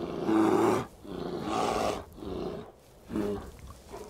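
Polar bears growling: four rough, breathy growls, the first the loudest and the last one short.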